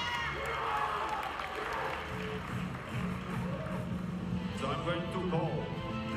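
Audience cheering and shouting, with music entering about two seconds in as a steady low held note under the crowd.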